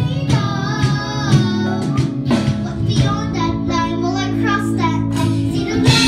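A young girl singing a song into a microphone, holding wavering sung notes, with live accompaniment from an electric keyboard and a guitar and a steady beat underneath.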